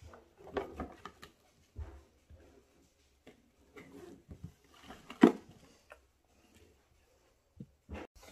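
Cardboard box and paper being handled: a series of short rustles and knocks as a paper sheet goes in and the lid is closed, with one louder short sound about five seconds in.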